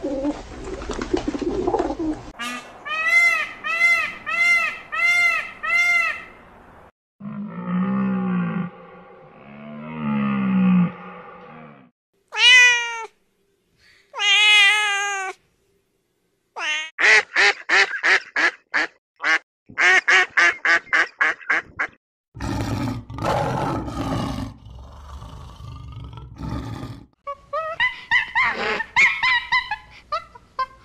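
A string of different animal calls played one after another: pigeons cooing first, then several short runs of calls, including a cat's meows about halfway through.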